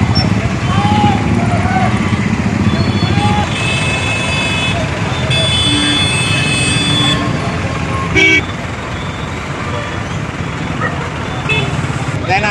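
Crowd chatter and street traffic, with a vehicle horn sounding twice around the middle, the second blast held for about two seconds, and a short loud toot a little later.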